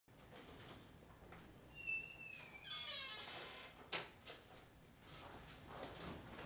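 A door opening: a few high, slightly falling squeaks, then a single sharp knock about four seconds in.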